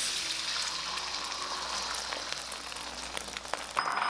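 Whisked eggs sizzling in hot oil in a wok over high heat, a steady hiss that eases slightly as the egg begins to set.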